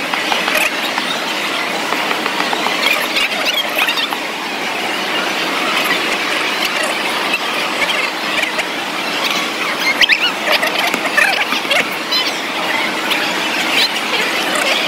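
Busy food-court crowd noise: a steady din of many people, with many short, high-pitched squeals through it, most marked about ten seconds in.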